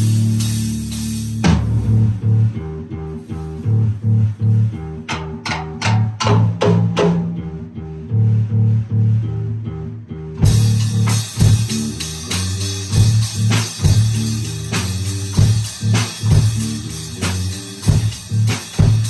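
Electric bass guitar and drum kit playing a rock riff together. The bass holds a low note, then plays a rhythmic riff. Drums and cymbals come in sparsely at first, then play steadily from about ten seconds in.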